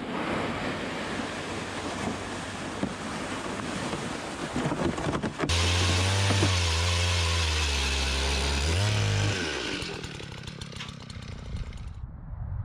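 Footsteps crunching over snow-covered ice while a sled is dragged behind. About five seconds in, a power ice auger starts suddenly and drills with a steady motor drone, which speeds up briefly before cutting off a few seconds later.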